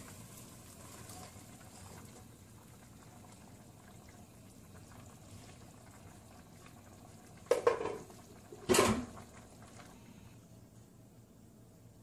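Thick tomato stew sauce is poured from one pot into another pot of cow skin, followed by a faint, steady noise from the pot. Two short clanks come about seven and a half and nine seconds in as the pot lid is handled and set on.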